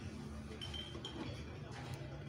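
Quiet room tone: a low steady hum under faint background noise, with two brief, faint high-pitched tinks about half a second and a second in.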